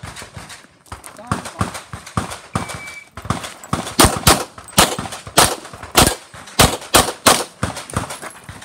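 Short electronic beep of a shot timer giving the start signal, followed about a second later by a fast string of pistol shots. The shots come in a quick rhythm, about three a second, and are the loudest sound.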